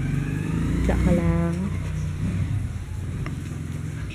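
A motor running steadily with a low hum, engine-like and unchanging in pitch. A short pitched voice sounds about a second in.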